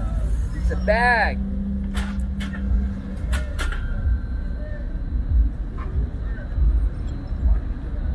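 Low rumble of a lowered car's engine and exhaust as it rolls past at low speed, with a steady drone in the first few seconds. About a second in, someone in the crowd lets out a short high whoop, and a few sharp clicks follow.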